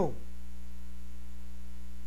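Steady low electrical hum, mains hum in the recording, with a few faint steady higher tones over it.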